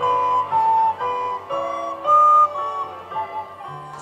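A recorder playing a slow melody of held notes over a low sustained accompaniment.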